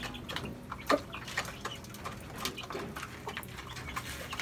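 Chickens pecking feed from small plastic cups in wire cages: a scatter of light taps and clicks, with one louder knock about a second in.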